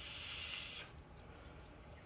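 A faint airy hiss of a draw on a vape, lasting just under a second, then only a low faint breath sound.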